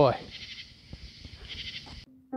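A man's voice finishing the word "Enjoy," followed by faint background noise with a few small clicks.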